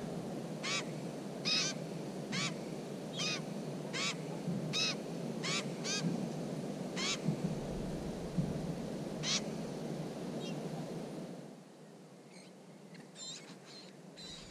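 Barred warbler calls at its nest: a short nasal call repeated about once a second over a low steady background noise. The calls grow fainter and sparser near the end, when the background noise stops.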